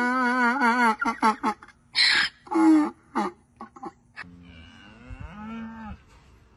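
Donkey braying: a long, loud, wavering hee-haw, then two short loud gasping brays. Near the end a fainter, lower, drawn-out animal call follows.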